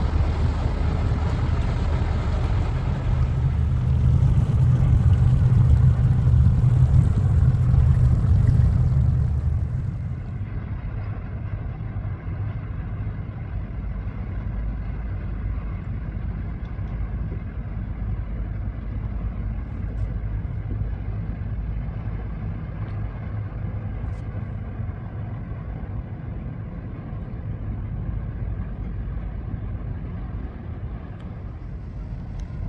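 A low, steady engine drone with a deep hum. It is louder for the first ten seconds, then changes abruptly to a quieter, steadier rumble.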